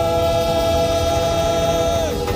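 Live gospel praise music from a church band: one long note held steady over the band's low bass, sliding down in pitch near the end.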